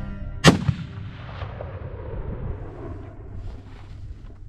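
A single rifle shot about half a second in, followed by a long echo that fades over the next few seconds.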